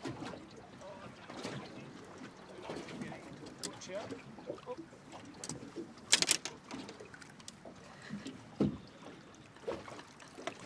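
Small boat rocking on calm water, with water lapping and scattered knocks of fishing gear being handled, the sharpest a brief clatter about six seconds in.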